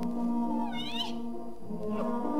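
Symphony orchestra holding sustained chords, with a short high sliding call that rises and falls about halfway through.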